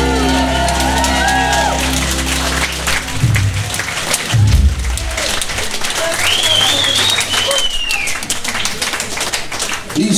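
An acoustic rock band's final chord on acoustic guitars, keys and bass rings out for about three seconds, with a couple of low thuds as it ends. Then the audience claps and cheers, with one long whistle from the crowd a few seconds later.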